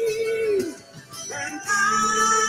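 Recorded gospel worship song playing: a woman's voice holds a long note with vibrato that falls away just under a second in. After a brief lull, a new, higher phrase begins about halfway through over the sustained backing.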